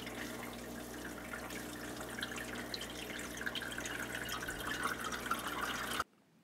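AeroGarden hydroponic pump running with a steady low hum while water trickles and drips through the cheesecloth-lined growing tray.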